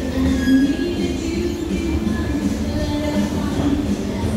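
Music with a melody playing over the steady low mechanical rumble of a moving escalator.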